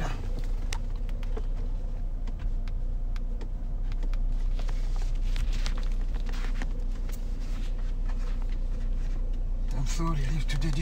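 Steady low rumble and hum of a car cabin, the engine and ventilation running, with faint scattered clicks.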